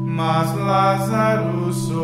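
A voice chanting a line over a steady, held instrumental chord.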